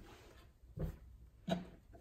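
Two short knocks, about two-thirds of a second apart, from small plastic items being handled and set down on a wooden tabletop.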